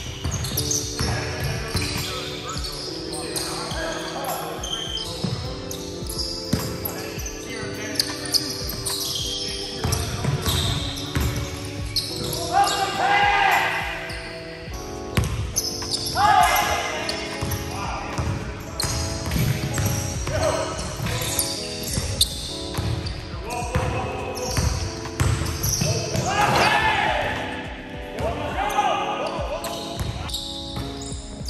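A basketball bouncing again and again on a hardwood gym floor during a pickup game, with many short knocks and the echo of a large gym, and players' voices at times.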